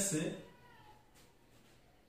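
Faint thin squeak of a marker pen writing on a whiteboard, just after a spoken word trails off.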